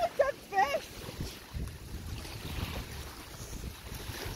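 Wind buffeting the microphone with a low, uneven rumble. A person's voice makes two short sounds in the first second.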